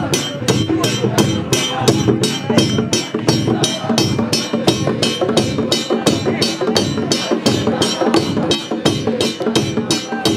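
Brass hand cymbals struck in a steady, even beat of about three clashes a second, with a congregation singing along.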